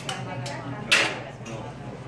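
Restaurant dining-room background of low voices and a steady low hum, with one sharp clack about a second in, the sound of something hard striking at the table.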